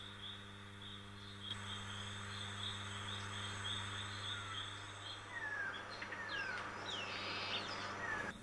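Faint tropical forest ambience: an insect chirping in a steady, regular pulse, joined in the second half by a few short bird whistles sliding down in pitch, over a steady low electrical hum.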